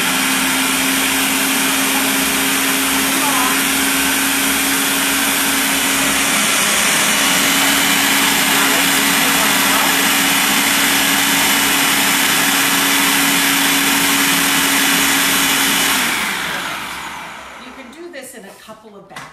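Food processor motor running loud and steady, chopping cauliflower florets down into a fine, rice-like hash. The motor stops about sixteen seconds in and spins down.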